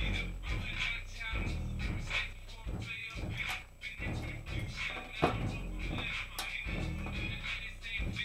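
Music with a heavy, pulsing bass beat played through a bare Massive Audio Hippo XL 6.5-inch subwoofer running open on a bench, the bass carried by the sub and thinner highs coming through alongside it.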